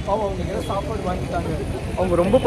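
People talking over a steady low rumble of street traffic.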